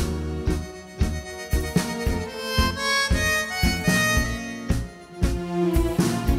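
Live band playing a tango instrumental, an accordion carrying the melody over a marked beat of bass and drum hits.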